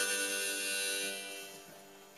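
Harmonica and steel-string acoustic guitar holding the song's final chord, which fades out about a second and a half in.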